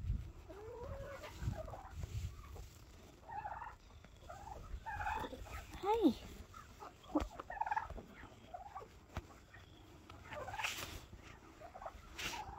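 Poultry calling and clucking: many short scattered calls, with a louder rising-and-falling call about halfway through.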